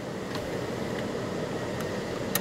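Air-conditioning blower of a 2015 Toyota Camry running on full: a steady rushing hiss.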